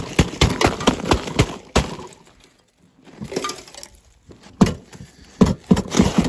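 Gloved hand swiping and brushing crusted snow off a tractor's vinyl seat: a quick run of crunchy swipes, about four a second, a short pause in the middle, then more swipes near the end.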